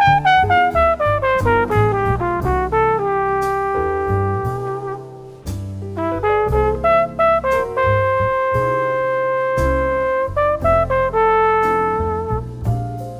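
Jazz trumpet solo over bass: a quick falling run of short notes, then slower phrases with held notes, the longest lasting about two seconds.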